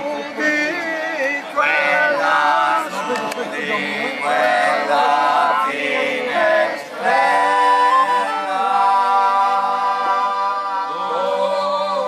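Several men singing a traditional Apennine folk song together in phrases, ending on long held notes.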